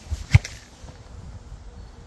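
A football thumping against the goalkeeper as a long-range shot is stopped: one sharp, loud thump about a third of a second in, just after a fainter knock.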